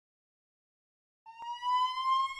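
Silence, then about a second in a single long high tone begins and slowly rises in pitch.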